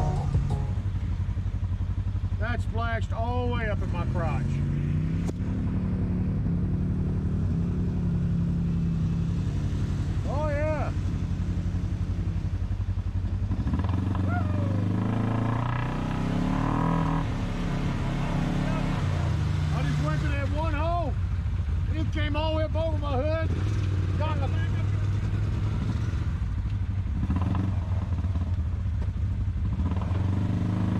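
Side-by-side UTV engine running steadily at low revs, its pitch shifting a little about midway. Short bursts of voices call out over it a few times.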